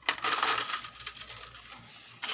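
Gold bangles clinking against each other and the plastic tray as they are set down, loudest in the first half second and then trailing off.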